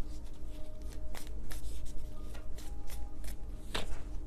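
A tarot deck being shuffled by hand to draw clarifying cards: a run of irregular soft card flicks, with a sharper snap about a second in and another near the end.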